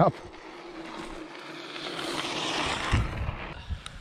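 Mountain bike rolling on a dirt trail: tyre noise and wind on the camera microphone swell and then fade as the bike slows, with a couple of light knocks near the end.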